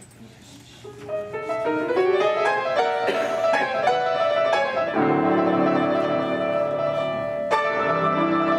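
Two grand pianos begin a lively ragtime-era piano duet: after a moment's quiet, a rising run of notes, then full chords in the bass and middle from about five seconds in.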